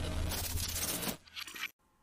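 Sound effect of coins clinking and jingling, with a fading low rumble beneath, cutting off suddenly near the end.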